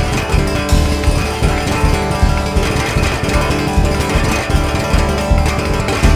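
Live instrumental rock: an electric guitar played over an electronic drum kit with acoustic cymbals, keeping a steady, driving beat with regular low kick-drum thumps.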